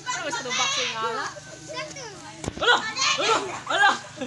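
Children's voices shouting and calling out over one another, with a single sharp knock about two and a half seconds in.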